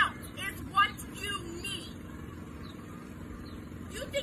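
A person talking during the first two seconds, then a steady low hum of an idling car engine.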